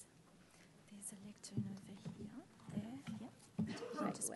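Faint, indistinct voices talking quietly away from the microphone, starting about a second in and growing louder near the end.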